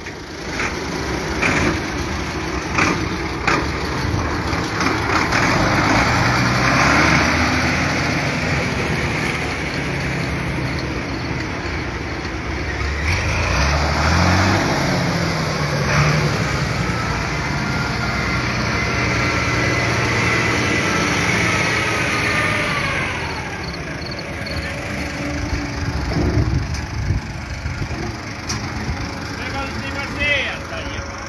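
Diesel tractor engines running close by, their note rising and falling about halfway through, with a thin steady whine over them for several seconds that drops away a little after two-thirds of the way.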